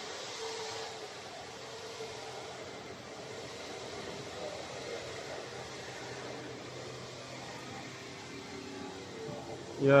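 Steady hum of running production-line machinery, with faint held tones underneath and no distinct knocks or starts.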